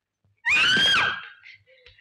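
A person's high-pitched scream, one loud cry about half a second in that rises and then falls in pitch and trails off within about a second.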